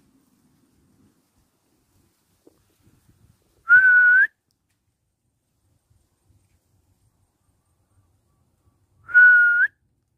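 A person whistling two short notes about five seconds apart, each a steady, loud note of about half a second that lifts in pitch at the end, with some breath hiss.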